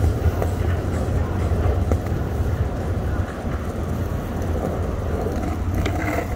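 Steady low rumble and hiss of city street noise picked up while moving along the sidewalk, with a few faint clicks.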